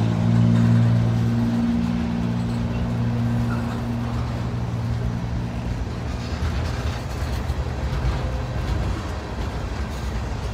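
Mixed manifest freight train's boxcars and tank cars rolling past on the rails with a steady, loud running noise. An engine drone, rising in pitch just before it starts, holds through the first few seconds and fades out around the middle.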